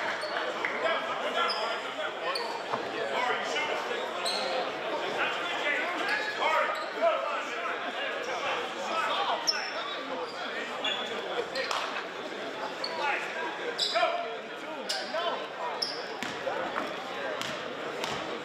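Indistinct voices of players and spectators echoing in a gymnasium, with a basketball bouncing on the hardwood floor now and then as sharp knocks.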